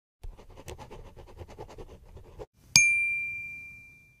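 A quick run of faint ticks, about eight a second, for two seconds, then a single bright bell-like ding that rings on and slowly fades.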